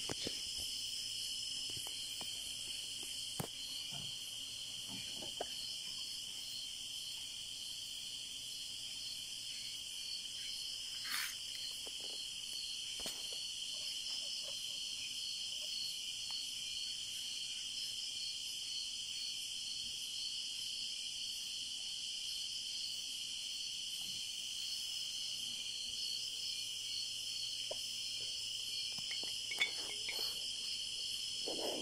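Night insects, crickets among them, chirping in a steady high-pitched chorus, with a few faint knocks scattered through it.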